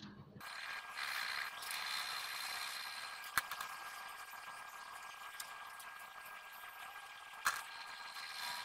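Graphite pencil scratching on thick drawing paper as hair is shaded, a steady dry hiss that is louder over the first few seconds. Two sharp clicks, about three seconds in and near the end.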